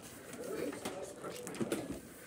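Soft, low cooing of a pigeon-type bird, heard mostly in the first second.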